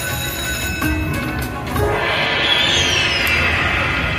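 Video slot machine playing its electronic spin music and bell-like chimes as the reels spin and stop. A brighter, falling run of tones comes in about halfway through.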